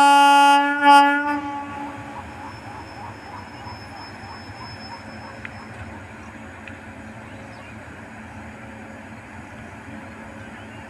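Indian Railways electric locomotive's horn sounding a long blast that cuts off about a second in, followed by the low, steady rumble of the train approaching.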